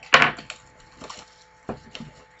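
Cardboard trading-card hobby boxes handled and knocked together: one loud knock just after the start, then lighter knocks about a second in and near the end as a box is lifted from the stack.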